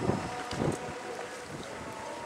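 Wind rumbling on the camera microphone, with two louder gusts in the first second.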